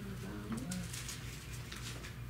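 Thin Bible pages rustling as they are turned, with a short low hum from a person's voice in the first second and a steady low electrical hum underneath.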